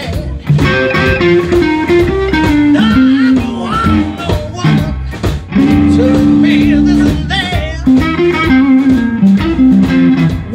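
A live blues band playing: electric guitar, organ and drums, with held low organ or guitar notes and steady drum hits.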